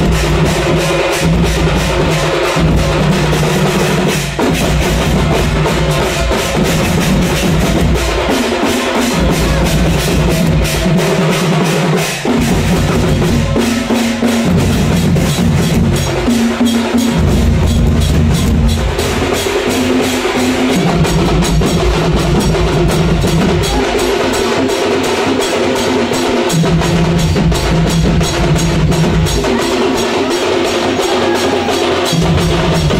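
Odia singha baja percussion band playing a fast, loud drum rhythm on a rack of drums and barrel drums. Deep bass-drum strokes drop out and come back every few seconds.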